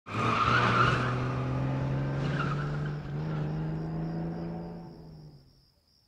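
A car driving away with a brief tyre screech at the start. Its engine note holds steady, steps up in pitch about three seconds in, then fades into the distance.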